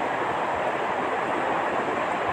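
Steady, even background noise with no voice, like a constant room or recording hiss.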